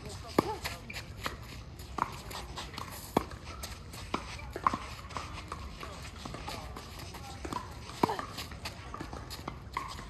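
Tennis rally on a hard court: a tennis ball being struck by rackets and bouncing, a sharp pop every second or two, with the loudest hits about five times, amid lighter clicks and scuffs of players' shoes.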